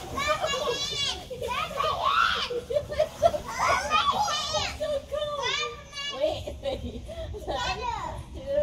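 Young children squealing and shouting excitedly at play, in high, wavering bursts without clear words.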